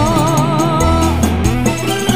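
Live dangdut koplo band playing, with kendang hand drums, bass, keyboard and guitar. A long note held with a wavering vibrato runs through the first half.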